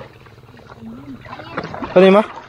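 A person's voice: a short, quiet voiced sound about a second in, then a loud drawn-out call starting right at the end.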